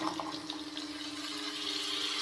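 Wet chopped carrots tipped into hot oil in a steel kadhai, sizzling in a steady, moderate hiss as their water meets the oil.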